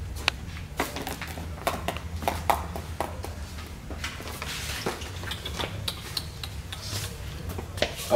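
Cardboard firework cake boxes being handled and set into a wire shopping cart: scattered knocks, taps and rattles, a few every second, over a steady low hum.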